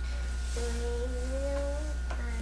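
A small child humming one held note that rises slightly in pitch and lasts over a second.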